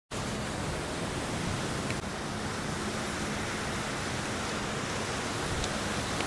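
Steady, even hiss with a faint low hum under it, beginning abruptly at the start.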